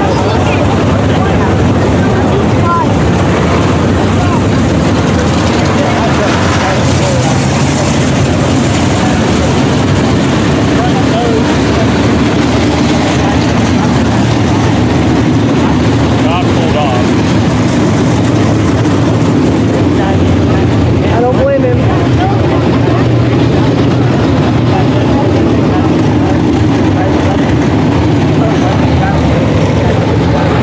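A field of dirt-track modified race cars' V8 engines running together, a loud, steady drone with no big rise or fall.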